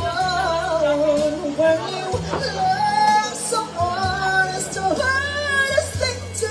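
A woman singing live into a microphone, holding long notes with vibrato, over amplified accompaniment whose low bass notes are held and change every second or two.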